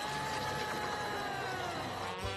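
A single high held tone from the cartoon's soundtrack, sliding down in pitch near the end.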